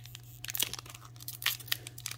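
Foil trading-card booster pack crinkling and tearing as it is pulled open by hand, in a scatter of small sharp crackles.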